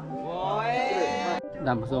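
A man's long, drawn-out shout, rising in pitch, cut off abruptly about one and a half seconds in, over soft background music.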